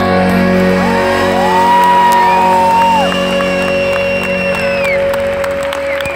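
Live rock band with electric guitars and brass holding sustained notes, heard over a loud PA, with shouts and whoops from the crowd. A high note slides up, holds and drops away about halfway through.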